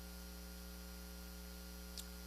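Steady electrical mains hum with a faint hiss, with a soft click just before the end.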